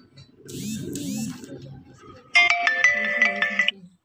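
The speaker of a talking Bhagavad Gita reading pen plays its electronic start-up jingle as it switches on after its button is pressed. It is a short run of bright, chime-like notes, starting a little over two seconds in, lasting about a second and a half, and cutting off suddenly. A softer, noisy stretch with a few sweeping sounds comes before it.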